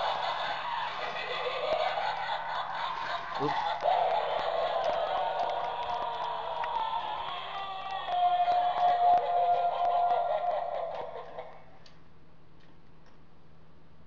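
An animated Halloween prop's built-in sound module playing its recorded track of voice and music as the prop runs its cycle, with a held tone about eight seconds in; it cuts off about eleven and a half seconds in.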